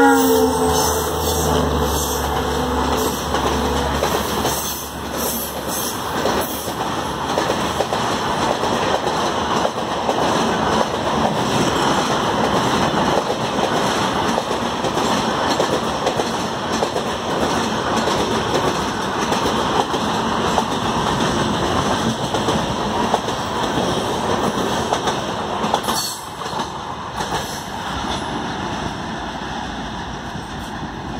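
An Indian Railways WDP4D diesel locomotive (EMD two-stroke engine) and its express train running through a station at speed without stopping: the last of a horn blast dropping in pitch as the locomotive passes, then the engine's rumble for a few seconds. A long, steady rush of coach wheels clattering over the rails follows and cuts down suddenly about four seconds before the end as the last coach goes by, leaving the train fading away.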